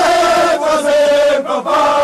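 Male voices chanting a football fan song in German, in long held notes with a short break about one and a half seconds in.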